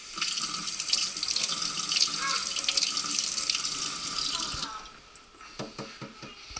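Kitchen faucet running into the sink for about four and a half seconds, then shut off, followed by a few light knocks.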